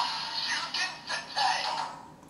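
DonBlaster transformation toy playing its electronic transformation music through its small built-in speaker, the tune breaking into short fragments and fading out.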